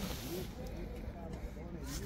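Faint, distant voices talking over a steady low background hum of outdoor ambience.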